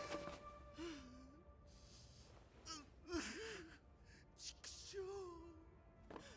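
Quiet anime soundtrack: a held music note fades out in the first second and a half. A character then gives a few short breathy gasps and brief wavering groans, spaced a second or two apart.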